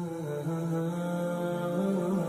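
Vocal nasheed: a single voice, with no instruments, singing long, slowly held notes.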